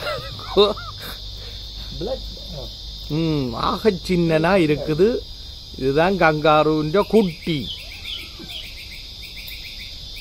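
A steady high-pitched insect drone runs throughout. Several short stretches of a pitched voice, rising and falling in pitch, come a few seconds in, and a run of short high chirps follows near the end.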